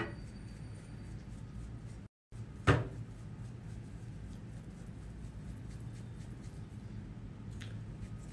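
A hard object knocking once on a tabletop, sharp and loud, about a third of the way in, with a lighter click at the start and another near the end, over a low steady room hum; the sound drops out completely for a moment just before the knock.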